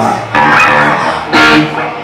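Electric guitars and bass guitar of a live punk band playing loud chords: one struck about a third of a second in and held, then a louder hit about a second and a half in.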